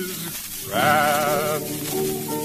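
Male voice singing a held note with wide vibrato, entering about three-quarters of a second in and lasting under a second, over piano. The recording is an old 78 rpm disc, with constant surface hiss beneath.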